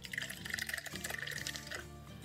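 A paintbrush being swished rapidly in a glass jar of rinse water, a quick watery sloshing that lasts nearly two seconds and stops just before the end, over quiet background music.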